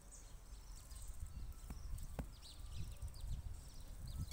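Hands pressing and working loose soil around a freshly planted sapling, firming it so that no air is left in: low scuffing handling noise with two short knocks around two seconds in. Faint bird chirps sit in the background.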